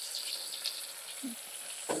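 Okra pieces frying in the hot inner pot of an OPOS CookBot V3, a faint, steady sizzle.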